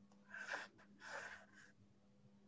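Two faint, short breaths into a video-call microphone, the second following about half a second after the first, over a faint steady hum.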